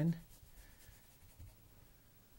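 Faint scratchy strokes of a large paintbrush working acrylic paint into a wood panel.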